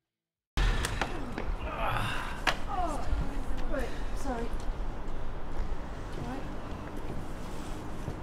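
Silence, then about half a second in a cut to rough handheld outdoor sound: a steady low rumble with scattered knocks and handling bumps. Over it come several short wordless voice calls, each falling in pitch.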